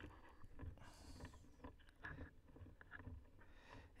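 Near silence: room tone with faint, scattered low knocks and a few small clicks.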